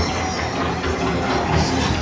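Dark-ride show soundtrack: music over a steady low rumble.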